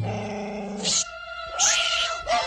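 Animated Siamese cats hissing: a short hiss about a second in, then a longer hiss with a rising yowl near the end. Before it, a held orchestral chord ends the song.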